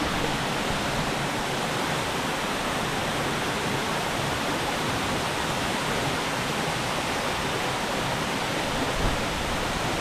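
Waterfall falling into a rocky pool, a steady, even rush of water.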